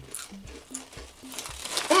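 Kelly's paprika potato chips crunching as they are chewed: scattered small crackles, over soft background music with a repeating low bass line.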